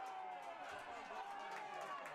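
Faint outdoor football-pitch sound with distant players' shouts: a couple of brief calls that fall slightly in pitch over a low background hush.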